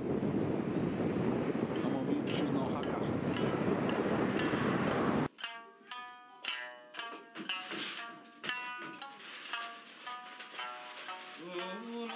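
Wind buffeting the microphone for about five seconds, then cut off suddenly by music: plucked string notes, each ringing and fading, with a held tone coming in near the end.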